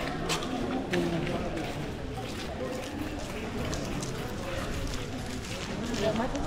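Several people talking in the background of an outdoor street, with footsteps and occasional sharp clicks.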